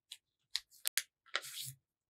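White paper being folded and creased by hand on a tabletop: faint rustling and crinkling, with a pair of sharp clicks about halfway through and a short rustle near the end.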